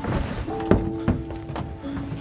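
Sustained tones of a horror film score, with a few dull thunks over them, the loudest about three quarters of a second in and another just after the middle.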